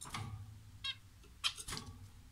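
Red-whiskered bulbul giving a few faint, short high chirps, with a couple of sharp clicks about one and a half seconds in.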